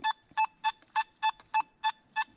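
Nokta Makro Simplex metal detector in park mode giving a quick run of short beeps at one pitch, seven of them at about three a second, as its coil is swung fast over a US large cent buried nine inches deep. At the faster swing the signal comes through a lot louder.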